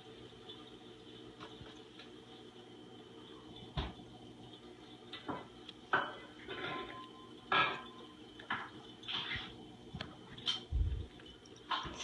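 Steady low room hum, then from about four seconds in a scattered run of short clicks, knocks and rustles, with a dull thump near the end.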